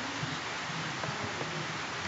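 Steady hiss of a computer microphone's background noise, with a few faint clicks as text is typed on the keyboard.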